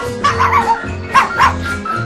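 A puppy yapping: a few short, high yips, the loudest two about a second in, over background music.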